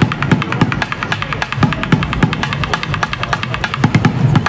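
Rapid drumming with two sticks on an upturned plastic bucket, about eight to ten strikes a second, with heavier low thumps mixed in among the lighter hits.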